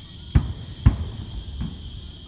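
Two booms from distant fireworks bursting, about half a second apart, the second a little louder, over a steady high chirring of crickets.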